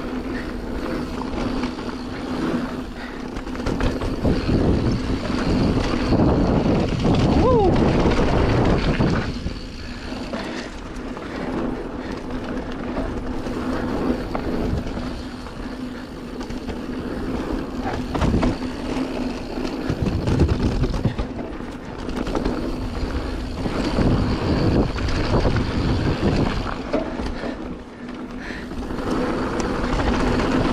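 Canyon Spectral mountain bike ridden fast down a packed-dirt trail: tyre noise on dirt and wind on the microphone, swelling and easing with speed, with a steady low hum. A brief falling squeak about seven seconds in.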